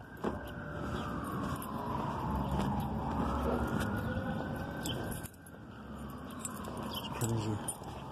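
A distant emergency vehicle siren wailing, its pitch falling and rising slowly, about one full cycle every five seconds, over the low hum of street traffic. Light clicks and rattles of handling come through as well.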